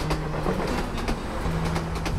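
Train running on the rails, with a clatter of wheels over rail joints and a few sharp clacks.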